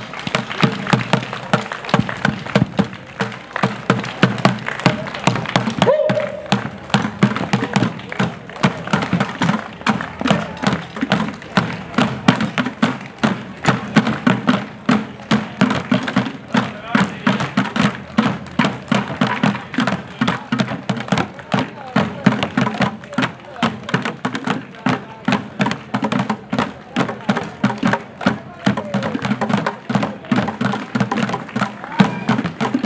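Drums carried by parading performers, beaten in a steady beat of about two strokes a second, with crowd voices underneath.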